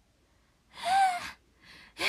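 A young woman's high-pitched, breathy gasp of surprise, a voiced 'eh!' whose pitch rises and falls, about a second in, followed by short breaths near the end.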